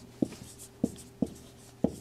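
Marker writing on a whiteboard: four short, sharp ticks at uneven intervals as strokes are drawn, with faint scratching between them.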